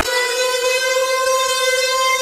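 A steady, unwavering electronic tone with many overtones, an edited-in sound effect that starts abruptly at a cut to a graphic and holds at one pitch.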